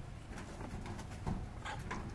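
Faint short animal calls, one brief call near the end, over light rustling and a few soft clicks.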